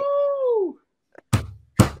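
A voice holding a falling 'ooh' tone, then two sharp knocks on a hard surface about half a second apart, made to mimic a hammer.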